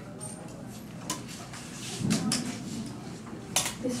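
Clothes hangers clicking and clattering as garments are handled and hung on a fitting-room door, with a sharp click about a second in and another near the end.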